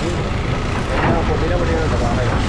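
Steady low rumble of heavy diesel machinery: a Caterpillar excavator working beside a dump truck. A voice speaks briefly about a second in.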